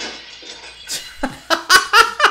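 A man laughing hard in short bursts, starting about a second and a half in after a quieter stretch.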